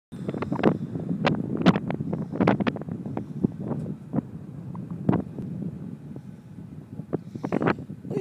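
Wind buffeting the microphone in irregular gusts, a low rumble broken by sharp thumps. It is strongest in the first few seconds and eases off toward the end.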